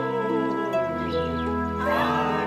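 A woman singing a Chinese folk song over instrumental accompaniment, holding long notes that bend gently in pitch.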